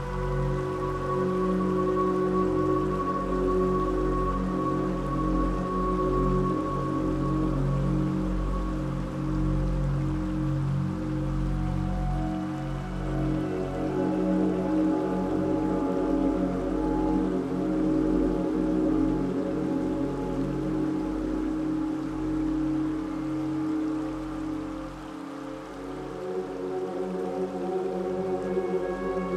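Slow ambient new-age meditation music: long held synth-pad chords over a low drone, the chord changing about twelve seconds in. A soft rain sound runs beneath it.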